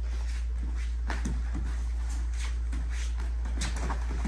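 Martial-arts sparring: a run of quick soft thumps and slaps from bare feet moving on foam mats and padded gloves striking, over a steady low hum.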